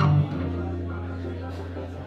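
Acoustic guitar's closing chord: the full strum drops away about a quarter second in, leaving a low note ringing and slowly fading as the song ends.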